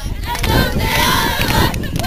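A large group of voices chanting together in unison, with hand claps through it.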